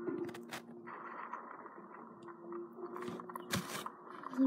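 Faint, muffled audio of a cartoon playing from a small screen's speaker, with a few sharp clicks in the first second and a scraping rustle of handling near the end.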